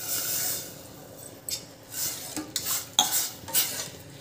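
Water poured from a steel tumbler into a stainless-steel pot of rasam, followed by a steel ladle stirring it, clinking and scraping against the pot several times.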